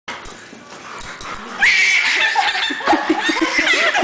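Puppies yipping and whining as they are chased, getting loud about one and a half seconds in, with a person laughing over them in the second half.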